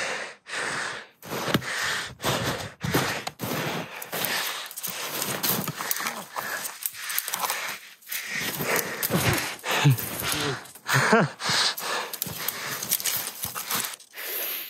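Uneven footsteps and breathing, about two or three sounds a second, with a short laugh near the end.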